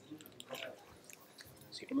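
Quiet, indistinct speech with a few small clicks and rustles.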